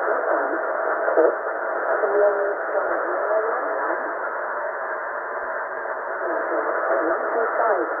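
Shortwave receiver in upper sideband on 11253 kHz, picking up the UK military (RAF) Volmet aviation weather broadcast. The announcer's voice is weak and hard to make out under a steady hiss of static.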